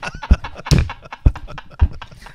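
A man making mouth sounds into a microphone to imitate little punches landing through clothing: a string of short, dull thumps about half a second apart, four in all, with chuckling around them.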